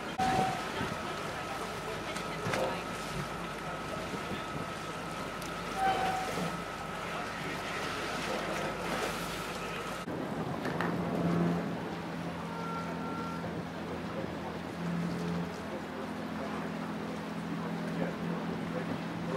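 Boat engine noise with wind and choppy water. A steady high whine runs through the first half, then the sound changes abruptly to a steady low engine hum.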